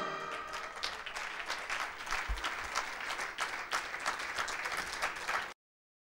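Audience applauding as the last chord of the orchestral music fades away, a clatter of many individual claps, which cuts off abruptly near the end.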